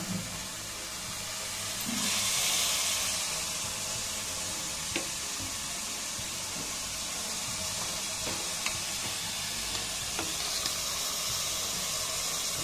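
Onion and spice masala sizzling steadily in an aluminium pressure cooker on a gas burner, the sizzle swelling for a couple of seconds about two seconds in, with a few faint clicks of a metal serving spoon.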